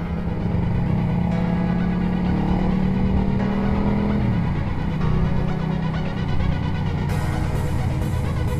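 Motorcycle engine running at steady revs, its note dropping about four seconds in as the revs fall, mixed with background music whose beat comes back near the end.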